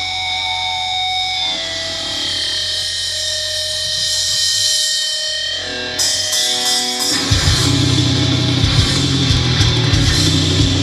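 Live hardcore metal band: held, slowly bending electric guitar notes ring out, then about seven seconds in the full band comes in heavy with distorted guitars, bass and drums.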